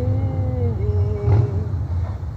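Acoustic guitar ringing on after a strum, with a change of chord a little before halfway and one light strum about two-thirds of the way in, then the notes fading.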